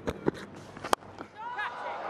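A few sharp knocks, the loudest about a second in: a cricket bat striking the ball. A voice starts near the end.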